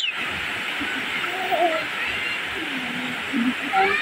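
Steady rain pouring onto leaves and wet ground, an even hiss.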